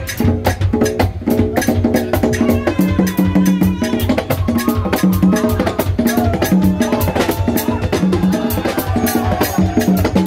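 Live band music with congas played by hand up front, a dense run of drum strokes, over steady repeating bass notes, with electric guitar and keyboard in the mix.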